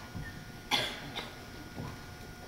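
A person coughing: one sharp cough a little before the middle, then a weaker one about half a second later.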